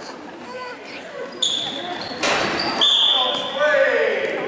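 Basketball game sounds echoing in a gym: a basketball bouncing, with one hard hit about two seconds in. Two short, steady high squeals and people's voices calling out follow in the second half.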